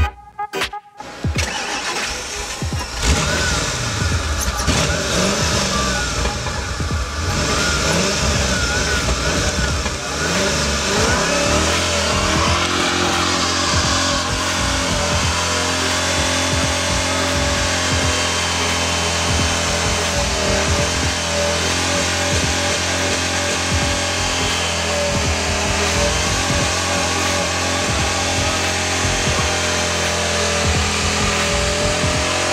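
Engine-swapped Volkswagen Caddy pickup's engine revving up and down in bursts, then held at steady high revs from about twelve seconds in as the truck does a burnout, its rear tyres spinning.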